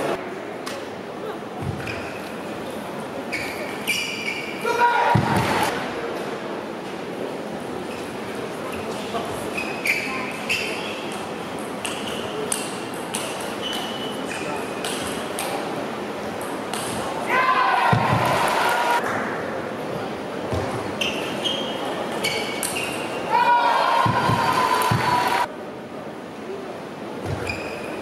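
Table tennis rally: the ball ticking off the rackets and bouncing on the table in quick exchanges.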